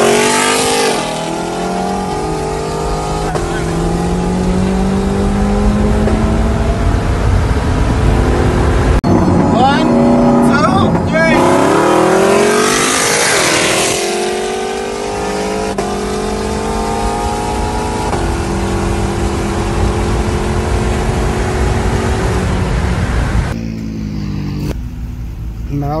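A car engine under hard acceleration, pitch climbing steadily through each gear and dropping back at each upshift, several times over, with wind and road noise, heard from inside a moving car. It cuts off near the end, leaving a quieter scene.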